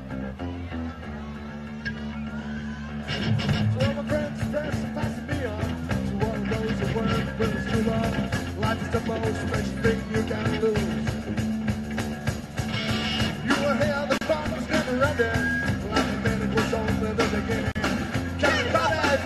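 Live punk rock band: an electric guitar holds chords for about three seconds, then the drums and the rest of the band come in loud, with singing over the top.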